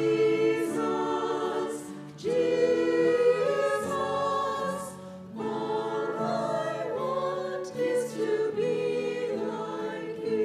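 Choir singing a hymn in long held phrases, with short breaths between phrases about two and five seconds in.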